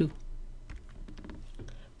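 Faint, scattered light clicks and taps of a pen stylus on a drawing tablet, over a low hum.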